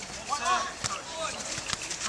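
Players calling out briefly during a small-sided soccer game on artificial turf, with a couple of sharp knocks of the ball being kicked.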